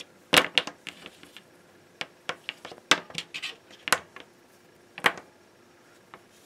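Silicone-insulated wire being handled and flexed against a plastic cutting mat: a series of irregular sharp taps, clicks and scrapes as it rubs and knocks on the mat, the loudest about a third of a second in.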